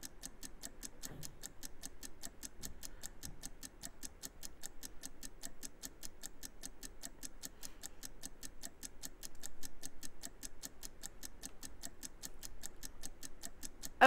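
Ticking-clock countdown sound effect timing a limited-time sale, a fast and even run of ticks.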